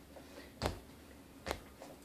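Two short, sharp taps nearly a second apart from a dancer moving through a shake step, against quiet room tone.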